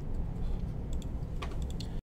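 A few sharp clicks of computer keyboard keys in the second half, over a low steady hum.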